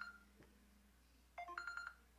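Electronic ringtone of an incoming call ringing twice: a few quick stepped beeps leading into a rapid warbling trill on one high note. One ring ends just after the start and the next comes about a second and a half in.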